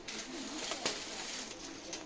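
Shop background noise: a steady low hum with a faint rustle, and one sharp click a little under a second in.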